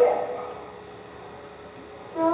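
The last sung note of a phrase by young voices, ending at the start and fading away with a short echo, followed by a pause of low steady hiss.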